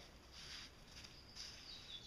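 Near silence: faint soft rubbing of hands smoothing wet concrete, twice, with a faint short bird chirp near the end.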